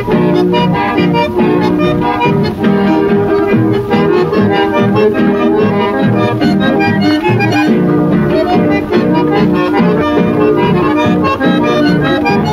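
A chamamé recording with the accordion leading over a steady rhythm.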